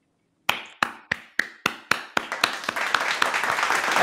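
Hand clapping: single sharp claps about three a second at first, quickening and thickening into steady applause.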